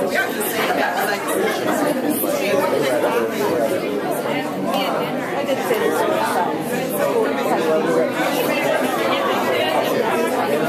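Chatter of a roomful of people talking at once: many overlapping conversations in a steady hubbub, with no single voice standing out.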